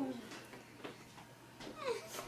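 Faint, muffled vocal squeaks from a girl with her mouth stuffed with marshmallows: a short one at the start and a falling whine near the end.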